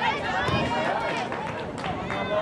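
Several voices shouting and calling over one another across a soccer field during play, with a couple of short knocks near the end.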